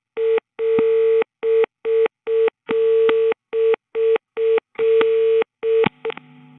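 Telephone busy tone (busy tone type 2) captured from an analog PSTN line and played back. A single tone beeps in a repeating pattern of three short beeps then one longer beep, the pattern coming round about every two seconds. A click near the end cuts it off.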